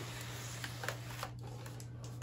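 Faint papery rustling of a dry clothes iron, with no steam, sliding over parchment paper, with a few soft clicks and a steady low hum underneath.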